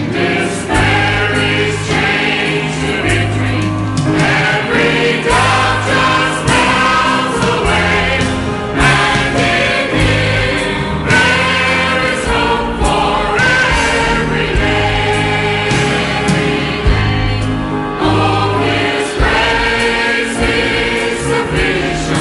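Church choir singing a hymn, many voices together over instrumental accompaniment with low held bass notes that change every second or two.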